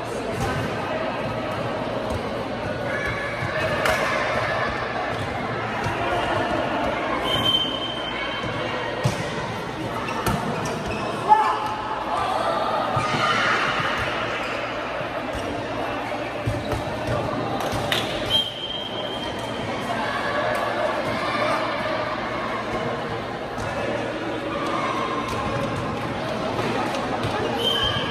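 A light volleyball being hit back and forth in a reverberant sports hall: sharp slaps of hands and arms on the soft ball, the loudest about eleven seconds in. Players' voices call and chatter throughout, and sneakers squeak briefly and high on the court floor a few times.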